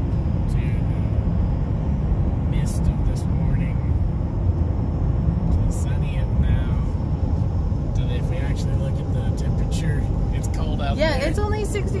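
Steady rumble of road and engine noise heard from inside a car cabin while driving at highway speed, with a few faint clicks.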